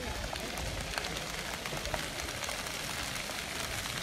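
Ground-level fountain jets splashing onto paving, a steady spattering hiss of falling water.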